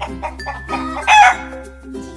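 A chicken call sound effect, loudest for a moment about a second in, over light background music.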